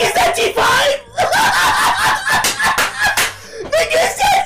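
A man laughing hard and loud, in high-pitched, shrieking bursts of excitement, with a brief break about a second in.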